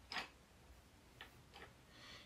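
Near silence broken by three short ticks, the clearest just after the start and two fainter ones later: a colored pencil working on paper.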